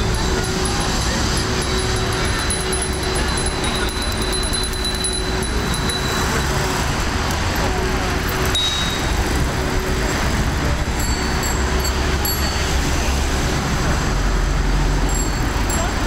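Steady city traffic: the low rumble of cars and buses on a busy boulevard as a large group of cyclists rides past, with voices mixed in.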